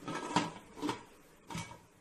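Aluminium pressure cooker lid being pressed shut and its handle locked: three short knocks about half a second apart.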